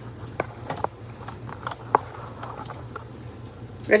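A few light, sharp clicks and knocks from handling in a kitchen, the loudest about two seconds in, over a steady low hum.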